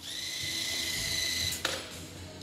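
The electric motor driving an FRC robot's intake rollers runs with a steady high whine as the rollers spin to push balls out. The whine stops about one and a half seconds in, with a brief sharp noise.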